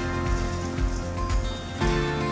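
Background music with sustained chords that change just before the end, over an even, hiss-like noise.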